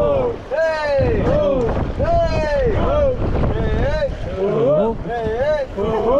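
Rafters chanting a rhythmic shout of "hey" and "oh", about two calls a second, to keep their paddle strokes in time, with wind noise on the microphone underneath.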